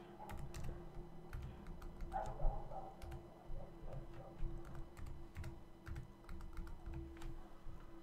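Typing on a computer keyboard: a run of irregular keystroke clicks over a faint steady hum.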